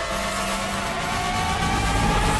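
Trailer sound-design riser: a loud, slowly rising whine over a dense wash of noise and a low hum, building up toward the title.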